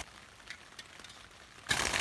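A very quiet gap with a couple of faint ticks. Near the end, the steady hiss of rain on the tarp canopy cuts back in abruptly.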